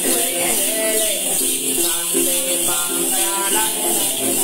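Then ritual music: a đàn tính gourd lute plucked in a steady run of repeated notes, under a continuous jingling of shaken bell rattles, with a woman singing a Then chant over it.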